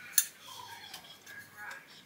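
Handling noise from a ceramic mug: one light click a moment in, then faint rustling and small knocks.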